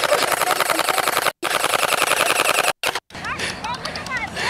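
Splatrball gel ball blaster firing in a rapid, evenly spaced stream of shots, cut off twice briefly and stopping about three seconds in. Voices shouting near the end.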